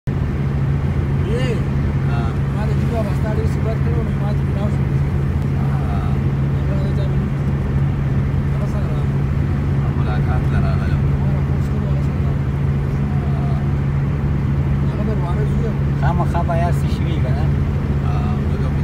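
Steady engine drone and road noise heard from inside a moving vehicle's cabin, holding an even pitch and level, with faint voices underneath.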